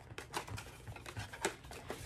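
A cardboard face-cream box being opened by hand: a run of light, irregular clicks and rustles of cardboard and paper.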